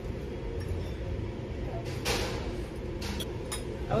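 A fork clinking and scraping on a plate a few times, over the steady low hum of a dining room.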